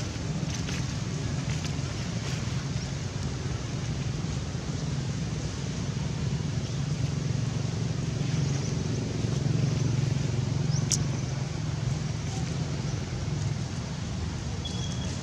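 Steady low rumble of outdoor background noise, with one sharp click about eleven seconds in.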